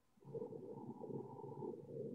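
Faint, muffled rumbling noise, such as a microphone being handled or rubbed, heard over a video-call connection that cuts off its higher sounds.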